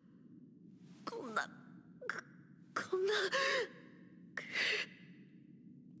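A man gasping and panting hard for breath: a handful of ragged gasps, the middle one carrying a wavering voiced groan, over a low steady background hum. The gasping is that of someone exhausted and shaken after nearly dying.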